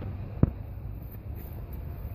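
A single sharp knock about half a second in, followed by a low rumble of handling and wind noise on a phone's microphone as the phone is swung about.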